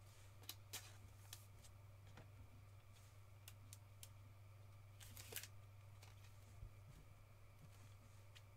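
Near silence over a low steady hum, with faint scattered clicks and taps from a clear rigid plastic trading-card holder being handled as a card is slipped into it. The clearest clicks come in a short cluster about five seconds in.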